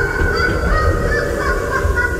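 Several high, wavering whistle-like tones overlapping, starting with a quick rise in pitch, over a steady low rumble.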